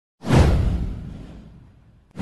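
A whoosh sound effect with a deep boom underneath, swelling suddenly a moment in and fading away over about a second and a half.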